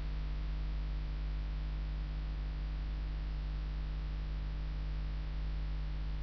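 Steady low electrical mains hum with a faint, even hiss underneath, unchanging throughout.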